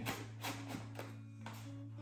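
A few soft clicks and taps as a foam hatch panel is pressed and seated back onto a foam model jet's fuselage, over a faint steady music bed.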